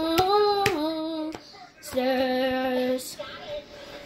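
A child singing without accompaniment: a sung phrase, a short break about a second and a half in, then one long held note that stops about three seconds in, with a few sharp clicks between.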